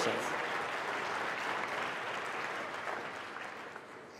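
Audience applauding, dying away steadily over the few seconds.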